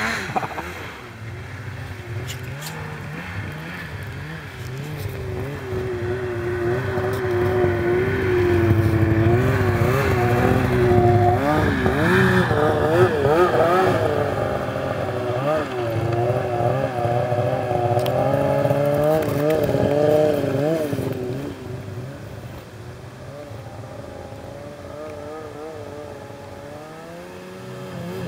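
Snowmobile engine revving up and down as the sled runs over snow drifts, its pitch rising and falling over and over. It grows louder through the middle and drops back to a quieter, lower running after about 21 seconds.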